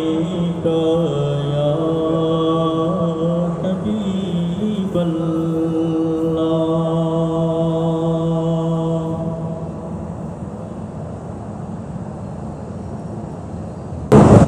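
Islamic devotional chant in praise of the Prophet, sung with long drawn-out held notes; it drops noticeably quieter about ten seconds in.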